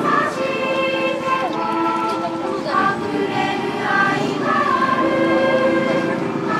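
A group of schoolchildren singing a song together, their voices holding long notes.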